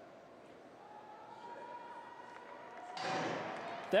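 Hushed stadium crowd while sprinters hold the set position. About three seconds in comes a sudden start signal, and the crowd noise rises at once as the 100 m race begins.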